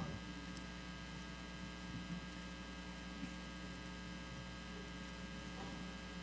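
Low, steady electrical mains hum with a faint hiss underneath: the background hum of the recording.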